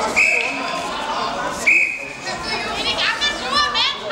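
Two short, steady referee's-whistle blasts about a second and a half apart over crowd chatter in a large hall. From about three seconds in, spectators shout and cheer in high, rising and falling voices, children's voices among them.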